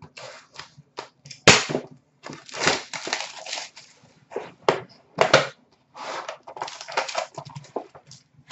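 Trading-card packaging being handled and opened: irregular crinkling and rustling of a foil pack wrapper and cardboard box. A sharp snap about one and a half seconds in is the loudest sound, and another comes just past five seconds.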